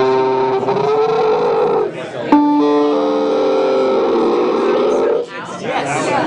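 Electronic synthesizer tones played from a handheld sensor controller running a software patch. One held note wavers in pitch. A second note starts sharply about two seconds in, bends in pitch, and cuts off about five seconds in.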